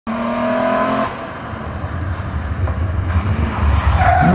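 BMW rally car engine approaching at speed: a steady high engine note that drops away about a second in, then a low rumble growing louder as the car nears.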